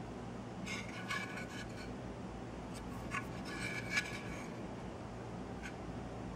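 Light rubbing and scraping of hands handling an aluminium heat-sink cover as it is turned over, in two short spells about a second in and around three to four seconds in, with a couple of small clicks, over a faint steady low hum.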